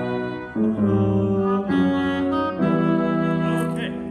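Orchestral music in slow held chords, changing about once a second, with the last chord ending near the end.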